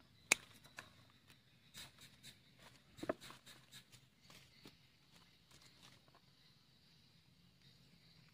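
Hand pruning shears snipping through a weeping fig root: one sharp click about a third of a second in. This is followed by faint scattered clicks and rustles as the roots and soil are handled.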